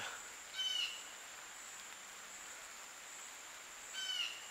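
Faint woodland ambience: a steady high-pitched insect drone, with a short bird call about half a second in and another at the very end.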